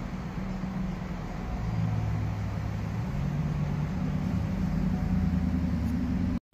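Steady low hum of a vehicle engine running at idle, its pitch shifting slightly a couple of times, over a broad background rush.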